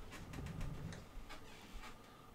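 Faint, scattered clicks and a weak low hum from an Epson EcoTank ET-8550 inkjet photo printer's mechanism as it prints slowly at its highest quality setting.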